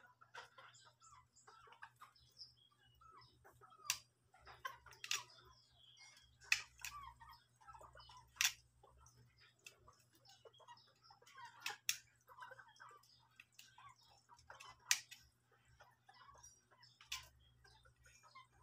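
Faint, irregular sharp clicks and small scrapes, about one every second or two, from hand-trimming a cue ferrule and tip with a utility knife, over faint short chirping calls and a low steady hum.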